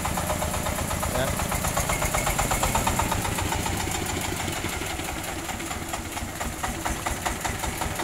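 The radiator-cooled diesel engine of a homemade mobile circular-sawmill vehicle runs steadily with a fast, even firing beat as the vehicle is driven slowly, and it grows slightly fainter toward the end.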